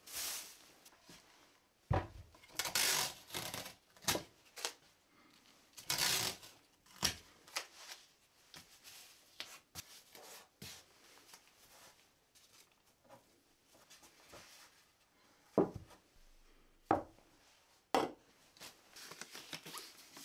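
Plastic drop sheet rustling and crinkling as it is spread and smoothed over a wooden workbench, then tape pulled and torn from a tape dispenser. A few sharp knocks come near the end as things are set down on the bench.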